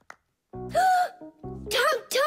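A cartoon character's high voice making two wordless exclamations, a held "ooh" about half a second in and a rising-and-falling one near the end, over a short bit of music.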